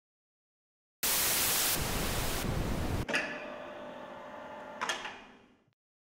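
Synthetic logo sound sting. About a second in, a loud burst of hiss starts and twice drops in brightness; then a click leads into a quieter, steady buzzing tone. A second click comes near the end, and the sound fades out.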